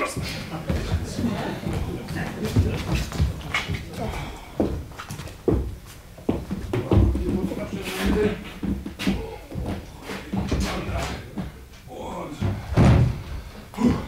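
A coffin being lifted and carried across a wooden stage: irregular knocks and low thumps as it is handled and set down, with the loudest thumps about seven seconds in and near the end.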